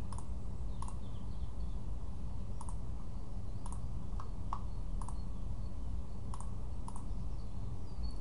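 Computer mouse clicking: about eight single clicks at uneven intervals, over a steady low hum.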